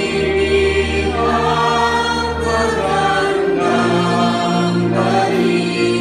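A woman on a microphone leads group singing of a Tagalog Christmas worship song, with instrumental accompaniment holding long, steady bass notes; the bass moves to a higher note about two-thirds of the way through.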